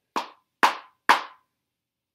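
A hard ballet pointe shoe, stiffened inside, knocked on a wooden floor three times about half a second apart. Each hit is a sharp, loud knock, the sound of a really hard shoe, unlike the silence of a soft fabric slipper.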